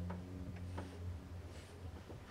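A low bowed double-bass note fading out, with a few faint clicks and ticks over it.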